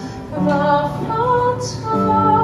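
Soprano singing a traditional Sicilian serenade with piano accompaniment: held sung notes after a brief gap at the start, with a small upward slide in pitch midway and a hissy consonant near the end.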